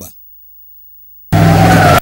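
Silence, then about a second in, a car's tyres screech loudly with a steady pitch before cutting off suddenly.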